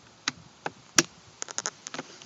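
A Mini Cooper convertible top's lock being pushed along its track with a screwdriver and into the first section: a string of sharp clicks and knocks, the loudest about halfway through and a quick cluster just after.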